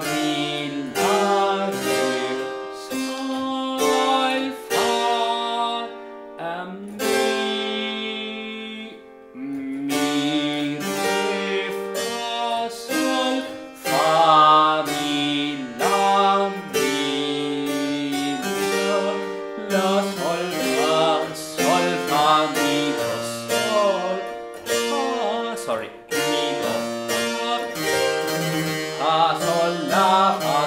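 Harpsichord playing a partimento: a moving bass with chords above it, note after note. A man's voice sings along with it, holding a long note about seven seconds in.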